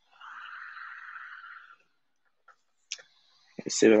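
Trading cards being handled: a soft rustle lasting about a second and a half, then a couple of light clicks. A man starts speaking near the end.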